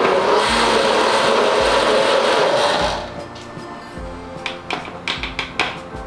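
Countertop blender running at full speed, blending a smoothie, then switching off about three seconds in. Background guitar music continues afterwards, with a few sharp clicks near the end.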